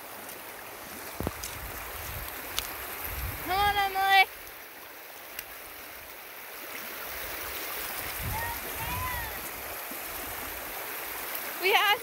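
Shallow stream water rushing over stones, a steady wash of noise with low rumbling gusts at times. About three and a half seconds in, a loud high-pitched call cuts through for about half a second, and two fainter calls come near the nine-second mark.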